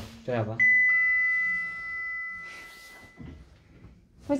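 Elevator arrival chime: a two-note ding-dong, a high note followed by a lower one, ringing on and fading away over about two seconds.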